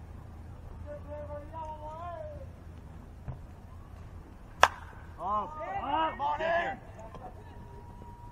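A single sharp crack as a baseball pitch is met at home plate, followed within about half a second by several voices shouting and cheering for about a second and a half. One voice calls out earlier, before the pitch.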